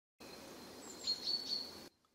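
A bird chirping a few times, about a second in, over a soft steady wash of small waves on a sandy beach.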